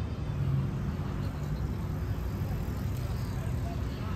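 Road traffic on a city street: passing cars make a steady low rumble.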